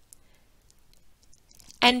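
Quiet room tone with a few faint, short clicks, then a woman's voice starting a word near the end.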